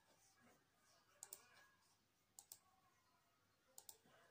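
Three faint double clicks, about a second and a half apart, over near silence.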